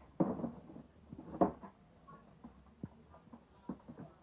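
Light knocks and clicks of a toddler's plastic tricycle being handled and played on, with two louder short sounds, one just after the start and one about a second and a half in, then a few faint ticks.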